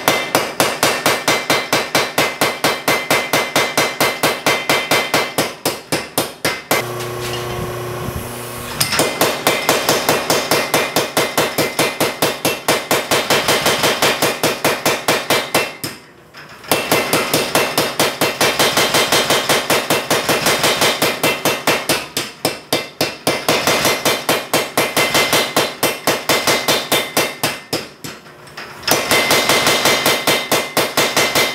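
Homemade motor-driven power hammer, its ram guided by pillow-block bearings, striking a red-hot steel bar on its anvil in fast, regular blows, several a second. About a quarter of the way in the blows stop for about two seconds, leaving a steady hum, then start again.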